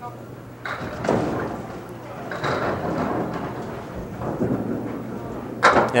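Candlepin bowling: a small candlepin ball rolling down the wooden lane with a continuous low rumble, and a few soft knocks early on. Crowd chatter in a large hall runs underneath.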